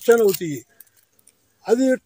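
A man talking in Telugu. His voice breaks off about half a second in, leaves about a second of near silence, and resumes near the end. A faint high rustle sits under his voice at the start.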